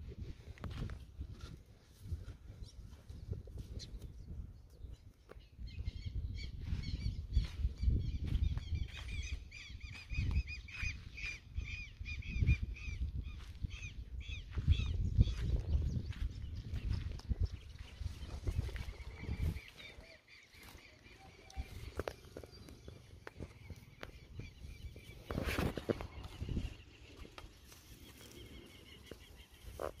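Farmyard birds calling in fast runs of short, high, repeated notes, with a pause and then a steadier stretch later on. Gusts of low rumbling noise run underneath, and one louder sharp sound comes near the end.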